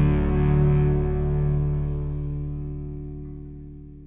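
A held distorted electric guitar chord ringing out and fading away steadily, the closing chord of a rock song.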